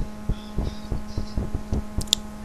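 Steady low electrical hum with a regular faint thumping pulse, about four beats a second.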